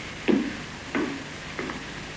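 Three short knocks about two-thirds of a second apart, each fainter than the last.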